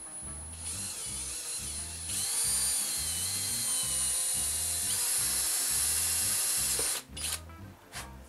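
Cordless drill running and drilling, its motor whine getting louder about two seconds in and shifting slightly in pitch as it works, then stopping about seven seconds in, with one brief further burst just after. Background music with a steady beat plays throughout.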